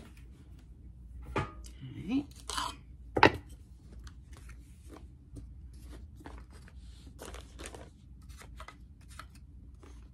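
Flat wooden tarot card stands being handled and set down on a cloth-covered table, with one sharp knock about three seconds in, then light taps and rustling as they are slid into place.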